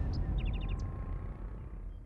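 A small bird chirps, with a quick run of five short high notes about half a second in, over a low rumble that fades away.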